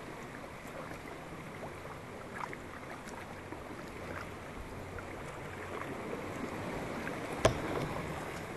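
Water lapping and dripping around a kayak's hull as it floats, with scattered small splashes and a single sharp knock near the end.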